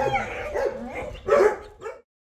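A dog giving a few short barks and whines in quick succession.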